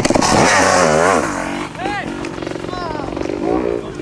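A dirt bike engine revving, its pitch dropping and climbing again in the first second, then running on at a steadier speed, with people's excited voices over it.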